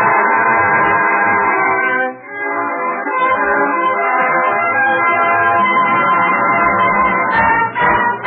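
Studio orchestra playing an overture medley of Texas songs, heard through the narrow, muffled sound of a 1930s radio transcription. The music dips briefly about two seconds in.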